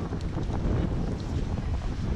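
Wind buffeting a GoPro camera's microphone: a steady, low rumbling noise.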